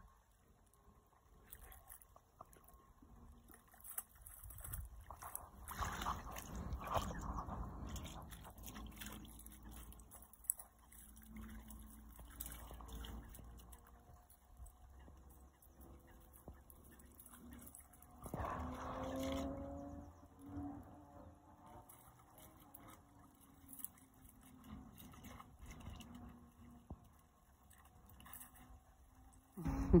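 Dog wading in shallow pond water among reeds, with faint sloshing and a few louder spells of splashing.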